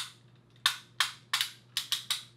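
Plastic ratchet joint in a toy robot figure's leg clicking as the leg is moved: about seven sharp clicks at uneven spacing, roughly three a second. It is the kind of ratchet that sounds like it's going to break.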